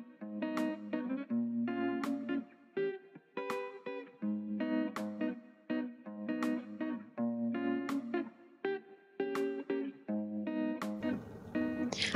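Soft background music: plucked guitar chords with a steady, even rhythm.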